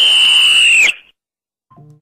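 A loud, shrill whistle held steady at one high pitch for under two seconds, cutting off about a second in.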